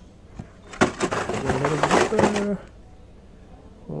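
Plastic blister-packed Hot Wheels cards rattling and crinkling as they are handled and flipped on a store peg: a quick run of clicks and clacks lasting about two seconds, with a brief voiced sound over it.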